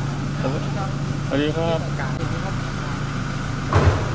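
A steady low machine hum runs under a man's short spoken greeting, and a single sharp thump sounds near the end.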